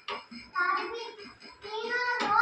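A child's voice singing, with a brief click right at the start.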